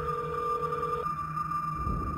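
A telephone call going through: a steady electronic ringing tone in the handset cuts off about a second in, over a thin, higher steady tone and a low hum.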